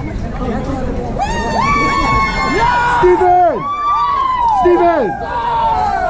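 Several band members sounding long, high notes, each held and then dropping steeply in pitch, overlapping one another over group chatter.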